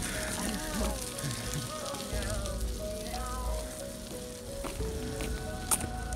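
Steady outdoor hiss with uneven low rumbles of wind on the phone microphone while walking along a wet road. Faint voices and a few steady held tones sit underneath.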